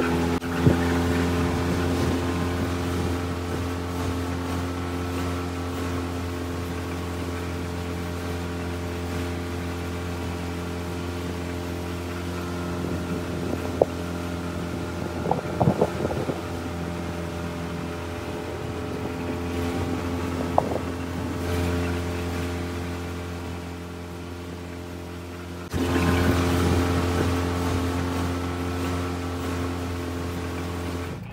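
Dinghy's outboard motor running at a steady cruising pace with water rushing along the hull, a few sharp knocks around the middle. The engine note dips a few seconds before the end, then comes back louder.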